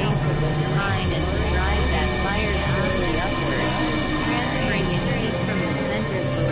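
Experimental electronic synthesizer music: a steady low drone under a dense layer of short warbling, gliding tones, with no beat.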